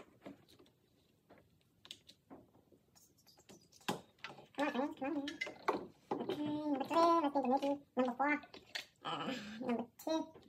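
A voice talking indistinctly through the second half, with faint scattered clicks in the first few seconds as ignition leads are handled.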